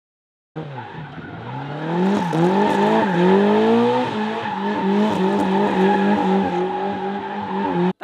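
Jokkis (folk-race) car's engine revving hard from about half a second in, its pitch climbing and dropping sharply twice as it changes gear, then wavering quickly up and down at high revs, with tyre noise as the car slides.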